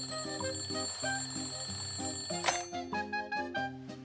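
An alarm clock ringing with a steady, high electronic tone over background music, cut off with a click about two and a half seconds in.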